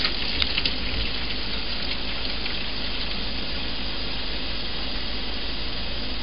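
Tap water running in a steady rush through a plastic hose, refilling the cooling water around a homemade still's condenser coil, with a few light clicks near the start.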